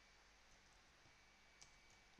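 Near silence, with a couple of faint computer keyboard clicks as a word is typed.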